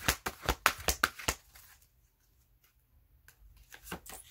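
Stiff oracle card deck being shuffled by hand: a rapid run of card snaps that stops about a second and a half in. A few single card clicks follow near the end as a card is drawn.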